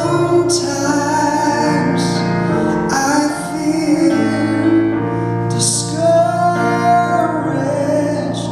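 A man singing an old hymn solo, accompanied by piano.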